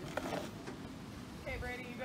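Faint voices talking, with a short stretch of speech near the end, over a low rumble of wind on the microphone; the band is not playing.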